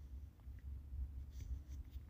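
Faint low background rumble with a few soft, scratchy rustles in the second half.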